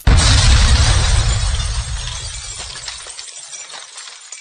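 Glass-shattering sound effect that starts suddenly with a crash over a low rumble. The rumble dies away about three seconds in, and the sound fades into fine tinkling of fragments.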